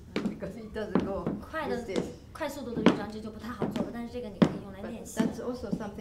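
Boots stamping on a wooden stage floor, four sharp knocks about a second and a half apart, marking the beat over a voice talking.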